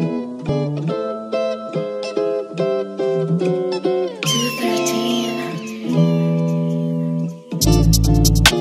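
UK drill instrumental beat at 143 BPM. A plucked, guitar-like melody plays on its own, and a bright swell with gliding high tones comes in about four seconds in. Just before the end the drums drop in with a deep 808 bass and fast hi-hats.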